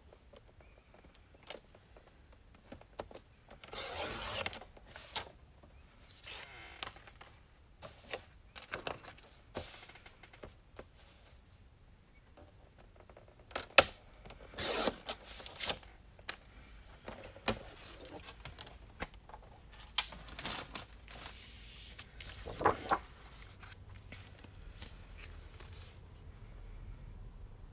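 Patterned paper being handled and cut on a paper trimmer with a sliding blade: a series of short scraping swipes and paper rustles, with a few sharp clicks, the loudest about halfway through and again later.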